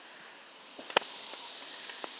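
A sharp click about a second in, as the handheld phone is handled, followed by a steady hiss of wind in the trees.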